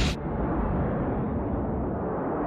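Movie sound effect: a steady, heavy rumble of a space rover's thrusters as it flies through the air. The sound is muffled, with no high end.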